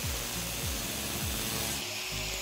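A thin abrasive cutting disc on a power tool cutting through the hardened steel nose of a pair of round-nose pliers clamped in a vise, a dense, high grinding hiss. Background music plays underneath.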